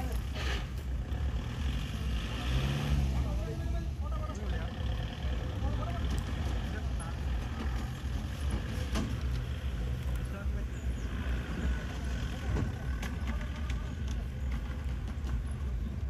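A soft-top off-road jeep's engine running at low revs with a steady low rumble, mixed with the voices of onlookers close by.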